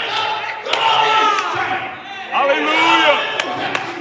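A man's loud voice in long, drawn-out sung phrases through a microphone, bending in pitch, with a short break near the middle. Scattered handclaps sound throughout.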